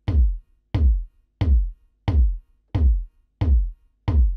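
Soloed electronic kick drum playing in a steady pattern, about one and a half hits a second, each hit a short boom that drops in pitch. An EQ bell boost is being swept around 1 kHz on it to add thwack, heard through a headphone emulation of Abbey Road Studio 3's big monitors.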